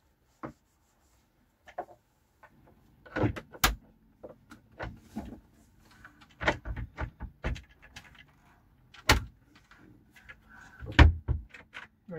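Wooden cupboard doors being refitted on their metal hinges and shut: a run of clicks, knocks and clatters of hinge hardware against wood, loudest about three and a half, nine and eleven seconds in.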